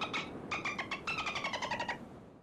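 Dolphin chatter: a rapid train of squeaky clicking pulses with whistle-like tones, breaking off briefly near the start, then sliding slowly down in pitch before it stops.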